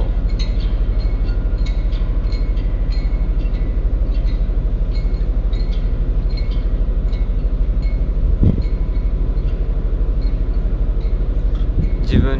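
Steady, low mechanical hum with a fast, even throb, running at constant speed, with faint irregular ticking above it and one short sound about eight and a half seconds in.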